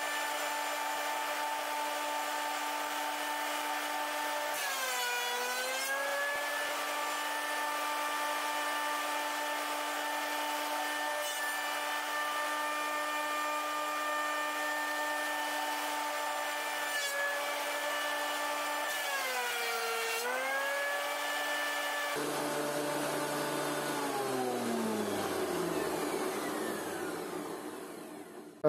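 Einhell TC-SP 204 planer-thicknesser running as a thicknesser, a steady motor whine. Twice its pitch sags for a second or so and then recovers: the cutter block taking load as boards are fed through. About 22 s in it is switched off and winds down with a falling whine.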